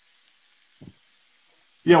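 Faint sizzle of cubed beef searing in a skillet on high heat, fading away over the first second. A voice comes in near the end.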